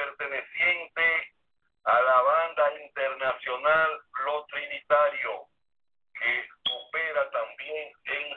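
A person speaking in phrases with short pauses, in a thin, telephone-like sound.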